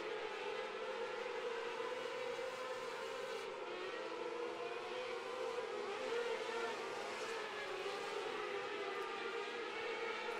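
A pack of 600cc micro sprint cars racing on a dirt oval, their motorcycle-derived engines held at high revs in a steady, fairly faint high-pitched drone whose pitch wavers slightly as the cars run through the turns.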